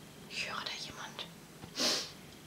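A woman whispering under her breath, with a short, sharper hiss near the end.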